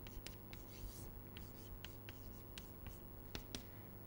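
Chalk writing on a chalkboard: a faint, irregular series of short ticks and scratches as the chalk strikes and drags across the board.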